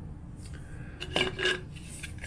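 3D-printed plastic prints being handled and set down, knocking against a hard surface: faint rustling, then two sharp clacks with a brief ring about a second and a half in.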